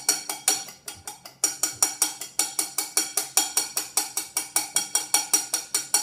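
A fork beating egg whites by hand in a white ceramic bowl: quick, even strokes, about five a second, each clicking against the side of the bowl.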